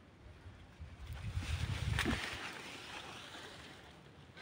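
Low rumble and hiss on the camera microphone, swelling about a second in and cutting off just after two seconds, with a light click at its height.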